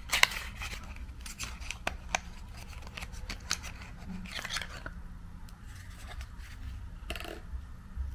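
Small cardboard cosmetics box being handled and opened: sharp clicks and papery scraping as the end flap is pulled open and the stick is drawn out of it.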